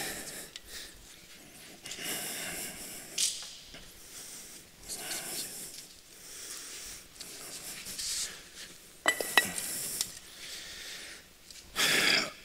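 Scuffing and shuffling as solid concrete retaining-wall blocks are carried across a concrete floor and set down, with a couple of sharp, ringing clinks about three-quarters of the way through.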